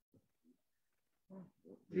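Mostly quiet, with a few faint, short voice sounds, then a man starts speaking about a second and a half in.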